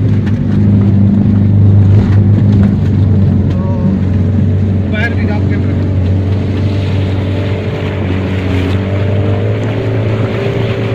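A 4x4 jeep's engine running steadily under load as it wades through river water, heard from inside the cab, with water rushing and splashing against the side of the body, the splashing growing stronger in the second half.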